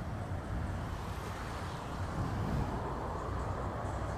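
Steady low rumble of road traffic and engine noise by a roadside.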